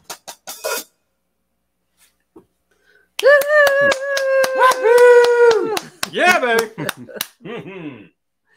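A few hand claps, a short pause, then a long whoop held at one pitch for about two and a half seconds with clapping under it, followed by shorter whoops that rise and fall: a small group cheering and applauding the end of a song.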